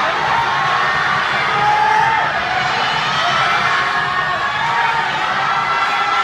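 Large audience cheering and shouting, with many voices overlapping at a steady level and single high shouts standing out.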